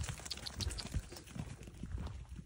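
Footsteps crunching on a gravel and dirt path, an irregular run of short crunches with a few low thumps.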